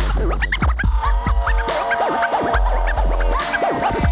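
Turntable scratching in a live DJ set: a vinyl record pushed back and forth by hand, giving quick rising and falling pitch sweeps over a heavy bass beat. The bass drops out and comes back several times, and held synth tones come in about a second in.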